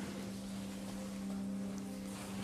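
A steady low hum made of several held tones, over a faint hiss.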